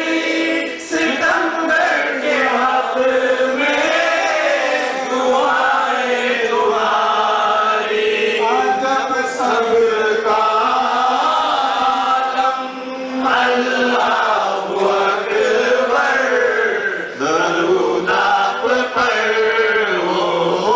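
Unaccompanied male voices chanting a devotional Islamic song in one flowing melodic line, with no drums or instruments.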